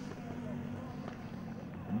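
Four-stroke racing scooter engine running at a steady, even pitch, fairly faint.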